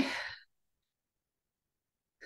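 The end of a spoken "okay" trailing off into a breathy exhale, fading out about half a second in, followed by dead silence.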